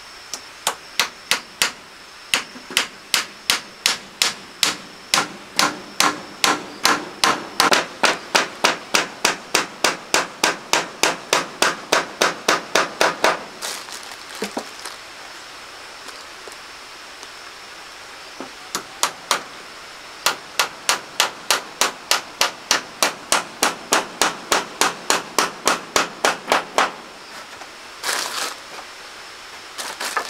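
A claw hammer driving nails into pine wall boards, a steady run of sharp blows at about three a second, stopping for a few seconds midway and then starting again. A short rustle follows near the end.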